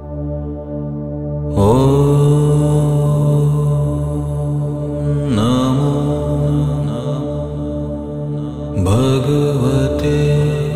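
A voice chanting a mantra over a steady, sustained drone. The voice comes in about a second and a half in, swoops up into a long held note, and starts new phrases near the middle and near the end.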